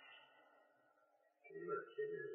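Near silence in a pause between a man's sentences, with only faint recording hiss. His voice comes back faintly about one and a half seconds in.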